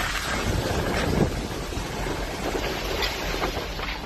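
Strong storm wind gusting through trees and buffeting the microphone.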